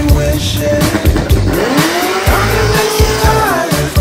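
Chevrolet Camaro accelerating hard away from a standing start, its engine note rising in pitch and then levelling off, with music playing over it.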